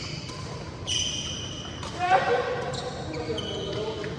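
Badminton doubles rally on an indoor court: sharp racket strikes on the shuttlecock about once a second, with high squeaks from shoes on the court floor.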